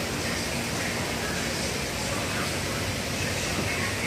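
Steady rushing of water circulating and bubbling through a bank of saltwater aquarium tanks.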